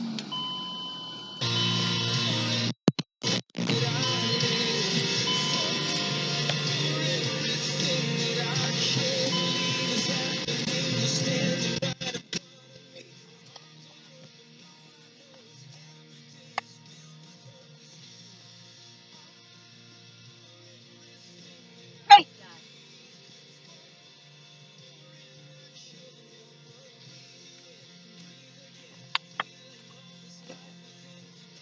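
Music plays loudly for the first dozen seconds, then cuts off suddenly. After that only a faint steady low hum remains, broken by a few single short clicks.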